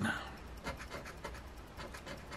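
A coin scratching the coating off a scratch-off lottery ticket in rapid, light back-and-forth strokes.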